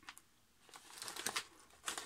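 Plastic crisp packet crinkling as it is handled and turned over: a run of soft crackles starting about a third of the way in.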